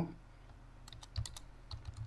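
Computer keyboard keystrokes, a quick run of faint clicks in the second half as a short word is typed.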